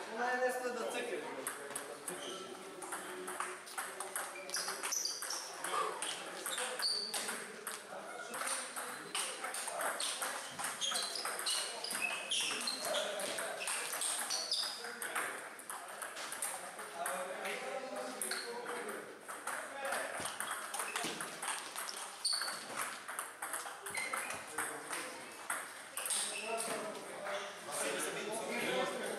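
Table tennis ball clicking off rubber paddles and bouncing on the table, hit after hit in quick back-and-forth rallies.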